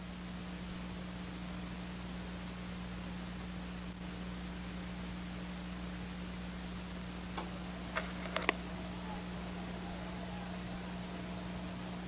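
Steady hiss with a low, even hum from an old broadcast recording, and a few faint clicks about eight seconds in.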